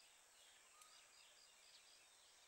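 Near silence: faint outdoor ambience with a few faint, short, high bird chirps.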